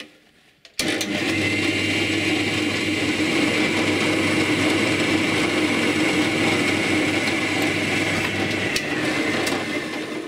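Bench drill press switched on about a second in, its motor running with a steady hum while the twist bit cuts an angled hole through a hard white engineering-plastic part. The motor winds down near the end.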